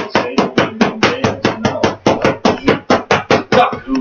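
Boxing gloves striking focus mitts in a fast, steady flurry of smacks, about six a second.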